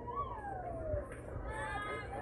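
A high voice calls out in one long call that slides down in pitch, and more high voices start calling near the end.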